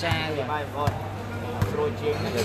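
A man talking continuously over a steady low hum, with three sharp knocks under his voice, a little under a second apart.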